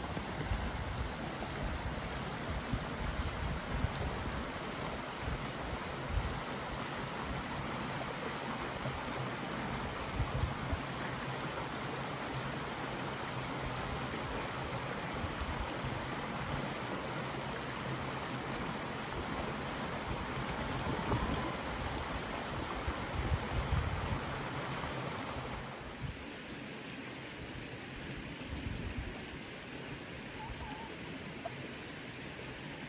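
A shallow stream rushing over stones, a steady wash of running water. It falls away to a quieter background about four-fifths of the way through.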